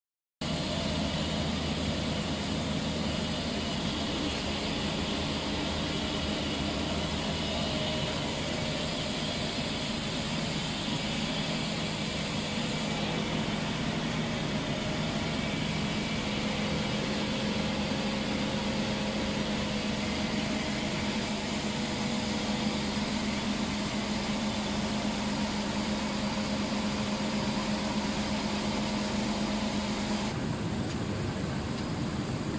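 Industrial machinery of a plastics extrusion line running: a steady drone of electric motors, drives and cooling fans, with a hum that grows stronger about halfway through.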